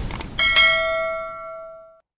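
Notification-bell chime sound effect for a subscribe-button animation: a couple of faint clicks, then two quick bell strikes under half a second in that ring on and fade away to silence by the end.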